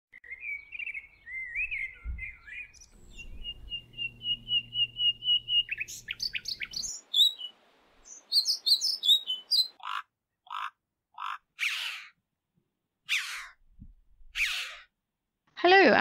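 Birdsong: a warbling phrase, then a steady run of quickly repeated notes, a fast run of high notes, and then about six harsh, rasping calls spaced out over the last few seconds.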